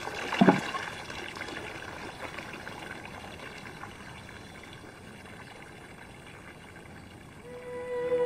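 Steady trickling water that slowly fades, with a brief sharp sound about half a second in. Soft music fades in near the end.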